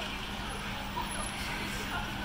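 Busy city street ambience: a steady hum of traffic and background noise with faint voices of passers-by.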